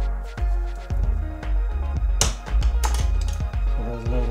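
Background electronic music with a steady deep bass beat, and a couple of brief hissing sounds a little past the middle.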